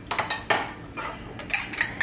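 Metal spoon stirring salsa in its jar, clinking and scraping against the jar's sides in a string of irregular taps.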